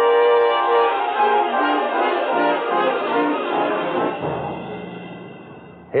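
Dramatic orchestral music sting led by brass: a loud held chord that breaks into notes stepping lower and then fades away.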